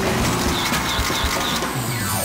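A television talk show's opening theme music with a steady beat. Four short high chirps sound in the middle, and a falling whoosh begins near the end.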